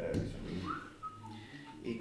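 Someone whistling a few short notes: a rising-then-falling note, a brief held note, then a couple of lower ones, over low voices in the room.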